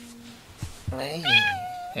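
A cat meows once, about a second in: a single drawn-out meow that rises in pitch and then holds level.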